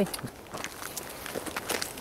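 Footsteps in snow: a run of irregular steps through the undergrowth, with a short "hmm, hey" at the start.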